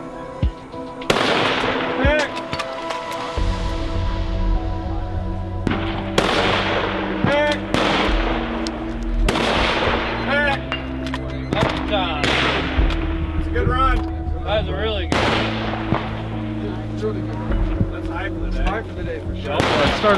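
Centerfire bolt-action precision rifle fired several times, one sharp shot every few seconds, each with a trailing echo. The shots sit over background music whose bass line comes in about three seconds in.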